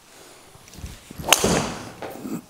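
A Cobra DarkSpeed driver striking a golf ball off a tee: one sharp crack of impact about a second and a third in, followed by a short fading tail.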